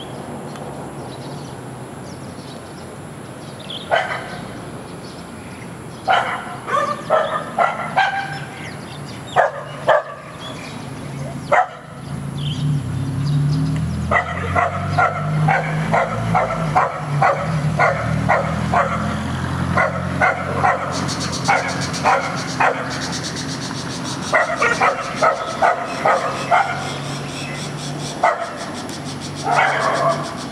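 A dog barking in bouts: a few scattered barks at first, then a fast run of barks for several seconds from about halfway, and another run near the end. A low rumble sits under the barking in the middle.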